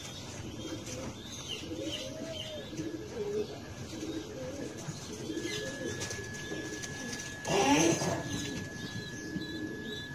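Domestic pigeons cooing repeatedly in low, rounded calls, with a brief loud burst of noise about three-quarters of the way through.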